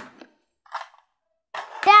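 A child's voice speaking briefly at the start and again near the end, with a near-silent pause between that holds one faint, short rustle.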